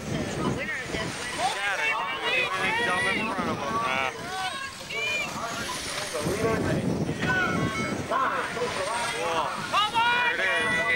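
Many spectators' voices overlapping and calling out at once, mixed with the whine of electric RC race cars running on the oval track.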